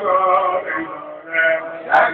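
A man singing a Sufi zikr (dhikr) chant in long, drawn-out, wavering notes. It drops quieter about halfway through and swells again near the end.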